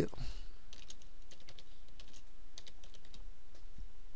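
Computer keyboard typing: a quick run of light keystrokes as a file name is entered, over a low steady hum.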